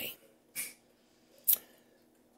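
A pause in quiet room tone, broken by a short soft rustle about half a second in and a single sharp click about a second and a half in.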